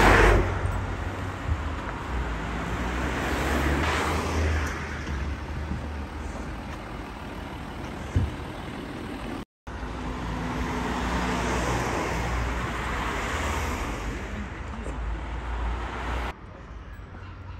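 Street traffic: a steady low engine hum with cars passing, swelling twice, and faint voices.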